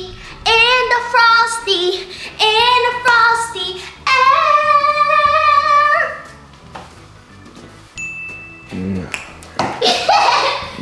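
Singing with music, with one long held note about four seconds in before the song drops away around six seconds. A short high beep sounds near the end.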